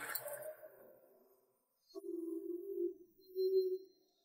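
Faint background score: a soft sustained low note comes in about two seconds in and holds for about a second, then a second, shorter note follows near the end.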